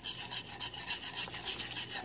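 Wire whisk stirring a green liquid in a nonstick skillet, its tines scraping and rubbing across the pan in quick repeated strokes.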